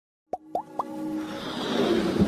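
Intro sting for an animated logo: three quick rising plops about a quarter of a second apart, then a whoosh that swells steadily louder.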